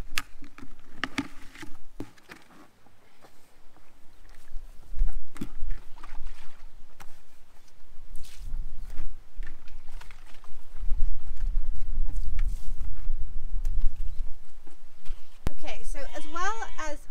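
Plastic buckets and lids being handled and set down, giving scattered hollow knocks and clicks, with a low rumble building in the second half.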